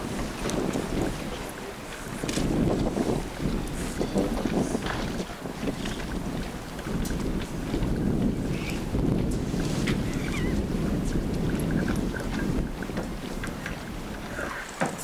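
Wind buffeting the microphone, a rumbling noise that rises and falls in gusts.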